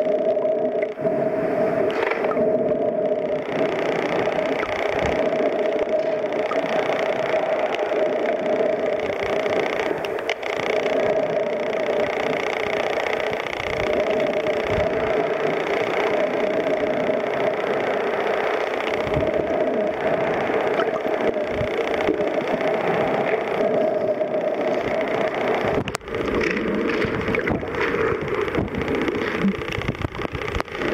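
Steady droning hum of a boat engine heard underwater, two even tones holding level. Near the end the hum shifts and bubbling water joins in.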